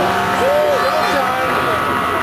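Demolition warning siren sounding a steady, unwavering tone, with spectators' voices over it.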